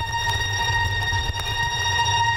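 Turntablist routine played through the club system: a record sounds one steady, unwavering tone with its overtones, over a low bass line, with a brief click about one and a half seconds in.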